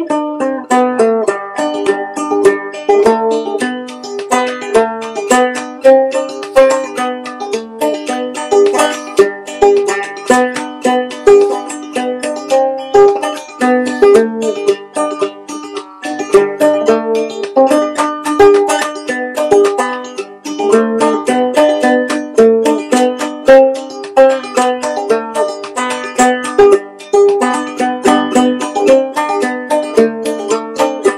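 Homemade five-string banjo played clawhammer style: a continuous instrumental tune of quick plucked notes over a steady rhythm, with the head freshly tightened.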